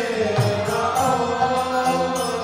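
Kirtan: a male lead voice sings a devotional chant over a harmonium's held chords. A mridanga barrel drum and a steady high percussive tick about twice a second keep the beat.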